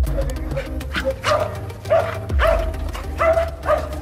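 A dog barking about six times in quick succession over background music.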